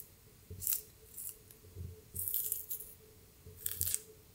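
Orange segment's thin membrane being peeled away from the juicy pulp by hand: about four short, wet tearing sounds, close up.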